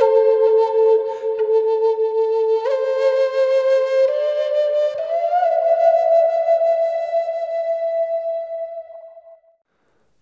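Recorded solo flute playing a slow melody of long held notes that step upward, the last note fading out near the end. It plays with the EQ flat, so the droning low-mid resonance around 600 Hz is left in.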